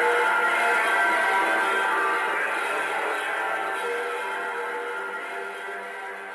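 Live instrumental music from an electric bass played through effects pedals: sustained, overlapping ringing tones that fade out steadily over the second half, recorded straight off the mixing console.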